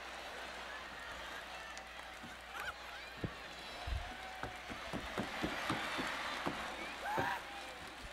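Theatre audience noise, a steady murmur of laughter and voices. In the middle stretch it carries a run of short sharp taps, about three a second, most likely the comedian's footsteps on the stage.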